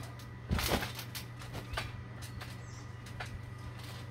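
A thump as a person lands on a trampoline mat about half a second in, followed by a few light clicks and creaks from the trampoline.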